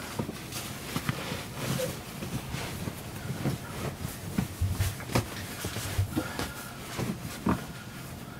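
A person shifting about and lying down on a cushioned bench seat: rustling of clothes and upholstery with irregular soft bumps, the strongest about five seconds in and again near the end.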